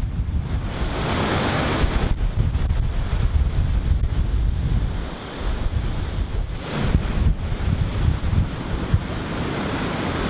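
Rough sea: heavy surf breaking and washing in against a concrete seawall and wooden groynes, in surging swells that briefly ease about five seconds in. Strong wind buffets the microphone throughout.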